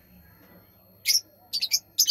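Budgerigars chirping: a few short, high-pitched chirps in the second half, after a quiet first second.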